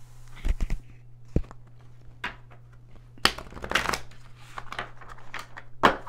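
A deck of tarot cards being handled and shuffled on a table: scattered taps and rustles, a longer stretch of riffling cards in the middle, and a sharp snap of the cards near the end. A steady low hum runs underneath.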